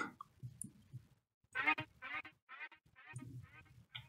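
Heat Up 3 software instrument on a violin sound previewing notes as they are placed in the piano roll: about five or six short pitched notes in a row, starting around a second and a half in.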